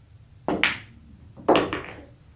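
Billiard shot: the cue stroke and the cue ball clacking into the object ball about half a second in, then a second, rattling clack about a second later as the ball drops into a pocket.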